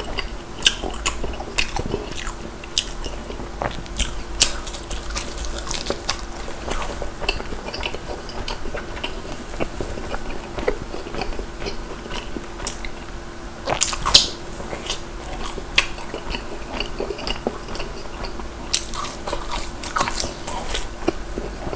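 Chewing and biting into a fried cheese ball, with many small crisp clicks and crunches and one louder crunch about two-thirds of the way through.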